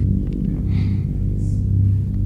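Eerie background music: a low, steady drone.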